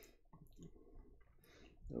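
Faint clicking at a computer, a few sharp clicks spread through the moment as a page is called up.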